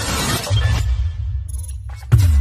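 Logo-intro music with sound effects: a noisy crash at the start that gives way to a deep, steady bass, which stops just before the end.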